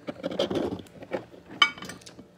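Close handling noise: scrapes and rustles as a hand moves a resin domino right up to the phone, with one short, sharp, high-pitched click or squeak about a second and a half in.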